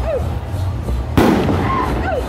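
Loud parade music with a steady low beat, cut through by a single sharp bang about a second in, the loudest sound, like a firecracker going off.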